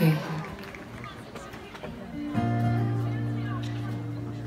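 A woman says a short "okay", then after a quiet moment, about two seconds in, an acoustic guitar chord is strummed and left ringing, fading slowly.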